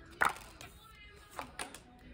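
Tarot cards being handled: one sharp card click shortly after the start, then a few fainter clicks and rustles.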